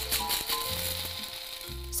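Braun electric blade coffee grinder, used as a spice grinder, running as it grinds whole mahlab seeds to powder; the noise weakens toward the end. Background music plays underneath.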